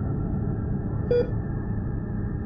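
Dark ambient music: a steady low drone with a single short, bright ping about a second in, like a sonar blip.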